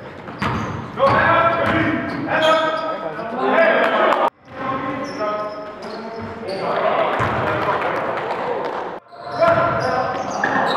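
Live basketball game sound in a gym hall: a ball bouncing on the hardwood floor and players' voices calling out, with echo from the hall. The sound breaks off abruptly twice where clips are cut together.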